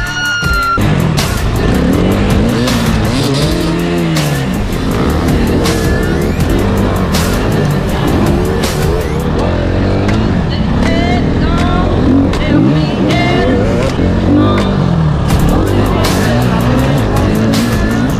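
KTM enduro motorcycle engine revving up and down again and again as the bike is ridden hard over a dirt track, with music playing underneath.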